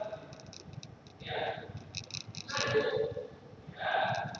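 Faint speech: a voice in three short phrases with pauses between, and light clicks in the gaps.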